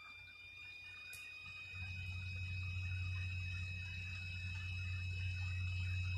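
A low steady hum that comes in about two seconds in, under faint steady high-pitched whining tones; no speech.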